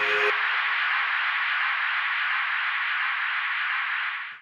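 A steady, even hiss like static, left on its own when the music cuts off about a third of a second in, with faint fading tones beneath it.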